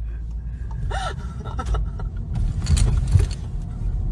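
Low, steady engine and road rumble heard inside the cabin of a moving car. A short gasp-like voice sound comes about a second in, and a few clicks and rustles follow in the second half.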